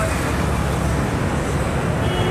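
Steady road traffic on a busy city street, motorbikes and other vehicles passing close by.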